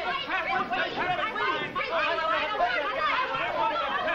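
Several people talking over one another at once, an overlapping clamour of voices with no single speaker standing out.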